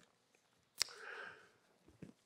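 A small mouth click followed by a short, soft intake of breath through the nose, in a pause between spoken sentences.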